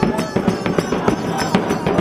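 Marching bass drum and cymbals beaten hard in a rapid, uneven run of strikes, several a second.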